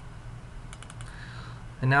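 A few faint computer keyboard keystrokes, clustered about a second in, over a low background hiss. A man's voice starts near the end.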